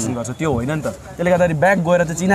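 A man talking in a conversation.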